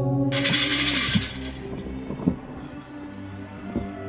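Film background score with steady held tones. About a third of a second in, a loud burst of noise lasting about a second cuts across it. The music then goes on more softly, with a few short dull thumps.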